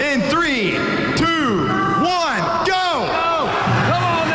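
Gym crowd yelling and cheering as a scooter-board race starts, in a run of rising-and-falling shouts repeated every half second or so.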